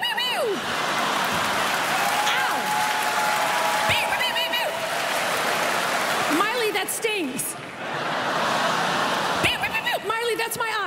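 Large audience laughing and applauding: a steady wash of clapping, with bursts of laughter and a held shout from the crowd in the middle.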